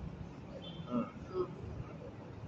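A pause in a man's reading: low room noise with a few faint, brief voices in the background.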